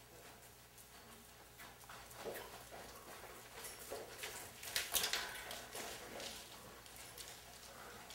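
Faint hoofbeats of a horse cantering, with a few louder hoof strikes about halfway through.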